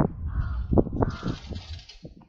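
Crows cawing, a few short calls over a low rumble.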